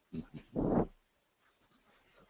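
A person's brief laugh: two quick short bursts, then one longer, all within the first second.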